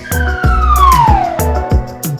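A cartoon sound effect: one long falling whistle tone, sliding steadily down in pitch, over children's background music with a steady beat.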